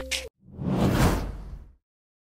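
An editing whoosh sound effect: a single swoosh that swells about half a second in and fades away within about a second, after the skit's music cuts off at the start.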